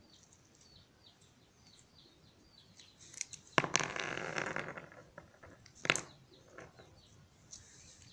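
Small birds chirping faintly in the background. Louder handling noises cut across them: a rough scrape lasting about a second, about three and a half seconds in, then a sharp click about two seconds later.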